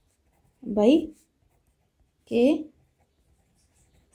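Ballpoint pen writing on paper, faintly scratching in the gaps between two spoken words.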